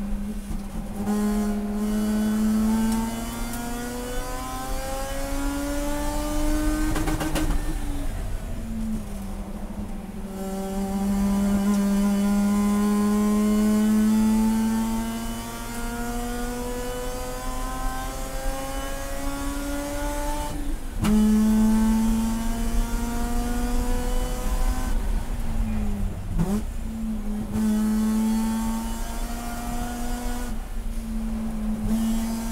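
A race car's rotary engine heard from inside the cockpit, working hard on track. Its note climbs and falls as the car accelerates, brakes and shifts, with pitch breaks at the gear changes about a third of the way in and again near two-thirds.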